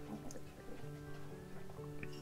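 Soft background music: a slow melody of held notes that change about every half second.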